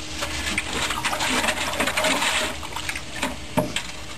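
Metal rod stirring wet lime putty in a galvanised steel bin: a run of wet sloshing with small scrapes and clicks of the rod on the bin. One stronger knock comes a little before the end.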